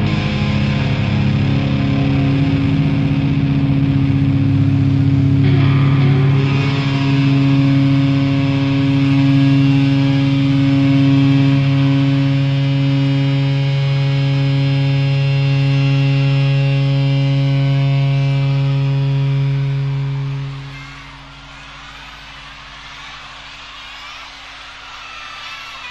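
Live rock band holding its final chord, electric guitars and bass ringing out on steady sustained notes. The chord stops about twenty seconds in, leaving much quieter background noise.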